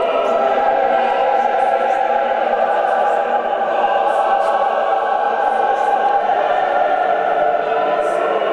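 A choir sings slow Orthodox liturgical chant, holding long, steady notes.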